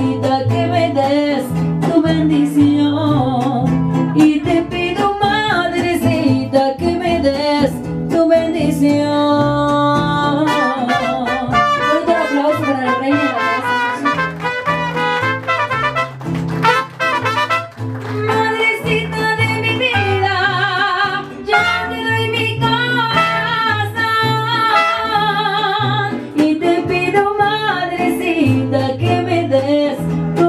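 Live mariachi music: a guitarrón plays a stepping bass line under strummed guitars, with a woman singing through a microphone.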